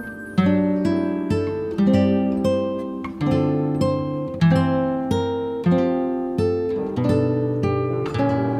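Background music of plucked strings, like an acoustic guitar, picking single notes one after another and letting each ring out.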